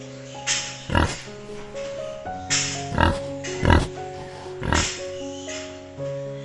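Pig grunting: a series of short grunts, about one a second, over background music with steady held notes.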